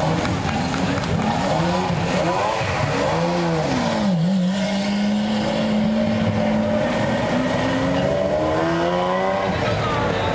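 Sports car engine revving up and down several times, then holding a steady note and climbing in pitch again as the car accelerates away, cutting off shortly before the end.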